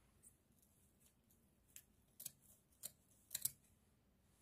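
Sequined fabric being handled: a few faint, crisp clicks and rustles in the second half, the loudest a quick double click near the end.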